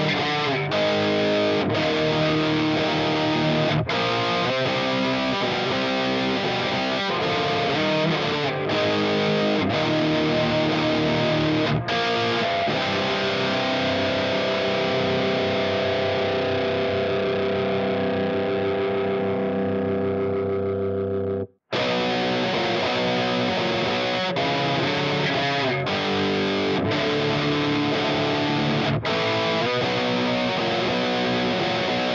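Heavily distorted electric guitar riff playing from the Axe-FX III looper, pitched down two half-steps by its Virtual Capo pitch block. A stop-start riff with short breaks leads into a chord that rings out for several seconds. The chord cuts off abruptly about 21 seconds in as the loop restarts, and the riff begins again.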